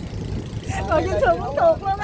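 Steady low rumble of a small river boat's engine as the boat moves along. A voice talks over it from about a second in.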